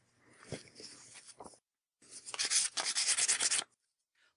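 Dry, scratchy rubbing against a varnished watercolor-paper bracelet piece. It starts with faint light scuffs, then after a short pause comes a denser run of fine scratchy strokes lasting about a second and a half.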